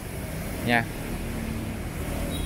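One short spoken word over a steady low background hum; no tool is running.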